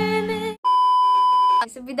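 A Turkish pop song stops abruptly about half a second in. Then comes a loud, steady electronic bleep about a second long, edited in as a sound effect, and a woman starts speaking near the end.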